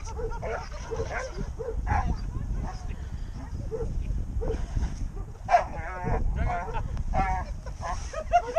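Malinois–German Shepherd cross barking repeatedly at a decoy during bite-suit work, with louder, higher, wavering cries a little past the middle. Wind rumbles on the microphone throughout.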